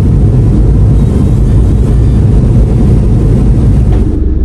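Loud, steady low rumble of a car driving on a wet road, heard from inside the cabin.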